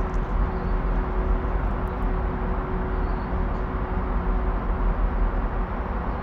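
Steady low rumbling background noise, with a faint steady hum that stops about four and a half seconds in.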